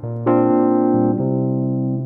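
Electronic keyboard playing sustained piano chords. A fresh chord is struck about a quarter second in and held, with the bass note moving about a second in.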